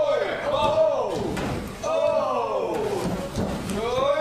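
Drawn-out voices calling out, with a couple of sharp knocks about a second and a half in, from wrestlers' bodies hitting a wrestling ring.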